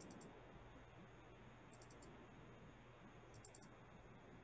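Near silence broken by three faint runs of quick clicks, about a second and a half apart, from a computer mouse scroll wheel being turned a few notches at a time.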